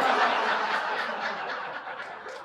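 Audience laughing at a comedian's joke, loudest at the start and dying down over the two seconds.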